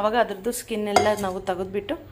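Aluminium pressure cooker pot clinking and knocking against the stovetop as it is moved, with a few sharp metallic clicks under a woman's voice.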